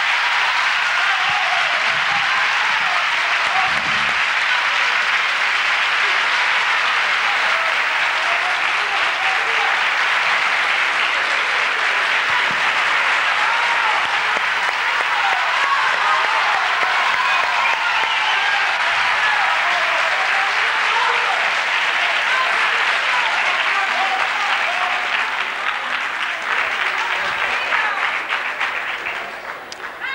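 Studio audience applauding, long and steady, fading out over the last few seconds.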